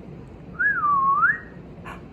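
A woman whistling one short note through her lips, lasting about a second, its pitch rising, dipping, then rising again. It is the signal in a listening game for children to pop up off the floor.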